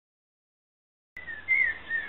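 Dead silence for about the first second, then the outdoor sound cuts in with a steady hiss and a bird singing a short, clear, wavering whistled phrase.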